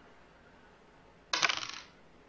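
A die roll for 1d4 damage: one short rattle of the die tumbling. It starts sharply about a second and a half in and dies away within about half a second.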